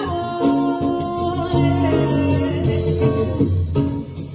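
Song: a vocal duet's music with long held sung or played notes over a plucked-string instrumental backing.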